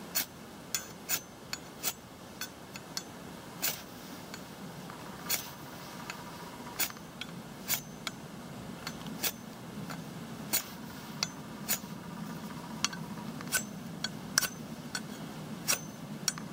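A UST Spark Force ferrocerium rod scraped again and again along the coated spine of an Ontario RTAK II knife: about twenty short, sharp metal scrapes, roughly one or two a second. The coated spine throws no sparks.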